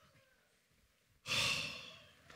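A man's heavy sigh, one loud breathy exhale about a second and a quarter in that tails off, close on a headset microphone; it conveys weariness.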